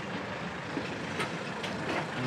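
Steady background noise of town-street traffic, with no single clear event standing out.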